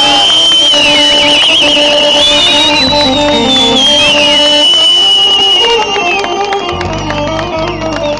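Live Turkish folk band playing an instrumental passage on keyboard and acoustic guitar, with a high wavering melody line that rises and falls above the steady backing notes.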